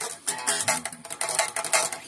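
Stratocaster-style electric guitar strummed in a run of quick strokes.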